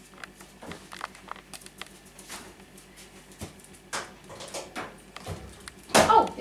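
Light scattered taps, knocks and brushing as a person's hands feel their way along a kitchen cooker and worktop to the microwave, with footsteps, growing busier in the second half.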